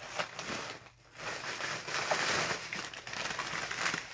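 Plastic instant-noodle packets crinkling as they are handled, with a short pause about a second in.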